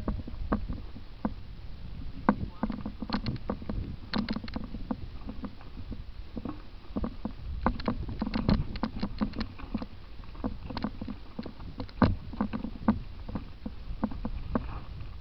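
Mountain bike clattering down a rocky, loose trail: a dense, irregular run of clicks and knocks from the bike and its tyres striking stones, over a low rumble, with one harder knock near the end.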